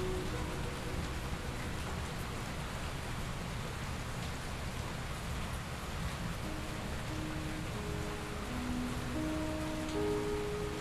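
Steady rain falling, heard together with soft, slow piano notes from a Kawai NV10, each left ringing under the held sustain pedal. The notes from the previous phrase fade in the first moment, the middle is mostly rain, and a new phrase of single held notes enters about six and a half seconds in.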